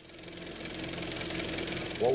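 A motor running with a fast, even pulse and a steady low hum, growing steadily louder.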